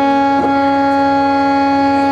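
Harmonium holding one steady note, a reedy tone rich in overtones, as the sustained accompaniment to a pakhawaj solo.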